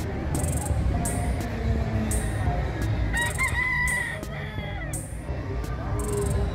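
A rooster crowing once, about three seconds in, holding a level note for about a second before it falls away, over a steady low background rumble.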